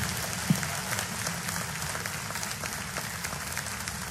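Congregation applauding: many hands clapping in a dense, steady patter, with a single low thump about half a second in.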